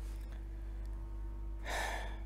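A man's short breath out, like a quick gasp or a breathy chuckle, near the end, over a low steady hum.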